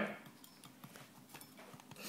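A few faint, irregular taps and clicks of a chef's knife lightly touching a lime on a wooden chopping board.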